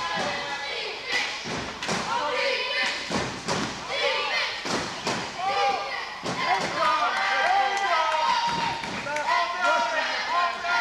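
Metal rugby wheelchairs knocking and banging into each other, a run of sharp irregular impacts and thuds, amid shouting voices in an echoing gym.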